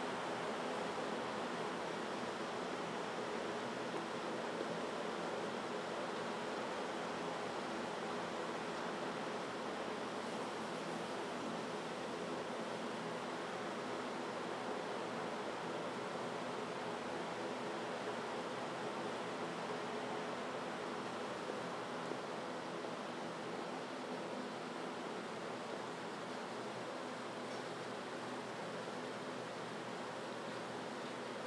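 Steady, even rushing noise with a faint low hum under it, unchanging throughout, with no distinct events.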